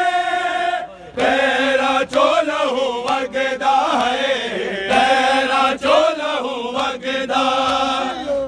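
Men's voices chanting a Punjabi noha, a Shia lament for Imam Sajjad, in unison. The chant is crossed by sharp slaps at a loose beat, like hands striking chests in matam.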